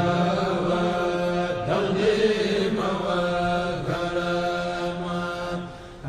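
Sufi devotional chanting in Arabic: long held notes that shift about every second, fading away near the end.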